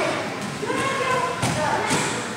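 People talking in a large hall, with two short thuds near the end.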